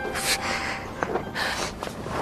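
A woman breathing in sharply twice, gasping and sniffling as she cries.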